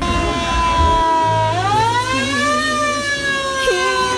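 A siren wailing: a steady tone that sweeps up in pitch about one and a half seconds in and then slowly falls away again.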